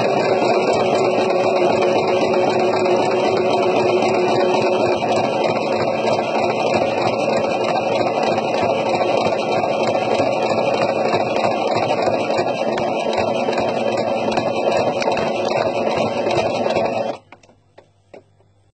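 Electric domestic sewing machine running steadily at speed, stitching the rows of topstitching through a bucket hat's brim. It stops suddenly near the end.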